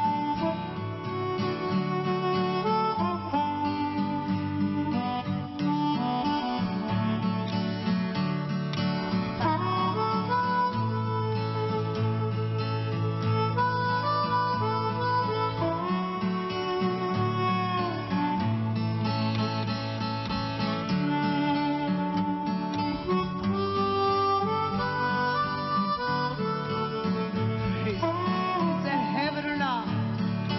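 Harmonica playing a melody of long held notes over a strummed acoustic guitar accompaniment, with a few notes bending in pitch near the end.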